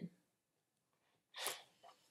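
Mostly quiet, with one short, sharp intake of breath by a woman about one and a half seconds in.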